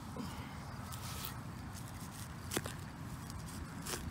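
Faint scraping and rustling of a hand digger being pushed into grass turf and soil, with one sharp click about two and a half seconds in. The digger thinks the blade may have hit the buried target.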